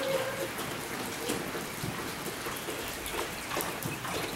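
Rain falling on a corrugated metal roof: a steady hiss with many small scattered ticks of drops.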